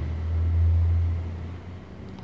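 A low rumble that swells during the first second and then fades away.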